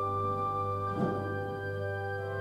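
Church organ holding sustained chords, moving to a new chord about a second in with a brief thump at the change.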